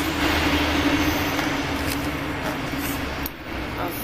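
City street traffic: a motor vehicle's steady engine hum over road noise, easing off after about three seconds.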